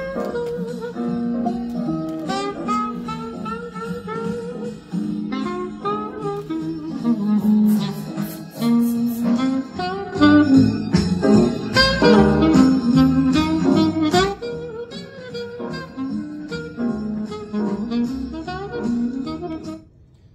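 Instrumental guitar music played through the Kenwood SJ7 mini hi-fi system's pair of wooden bookshelf speakers. The music stops abruptly at the very end.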